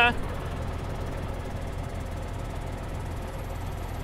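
John Deere 6930 tractor's six-cylinder diesel engine idling steadily close by.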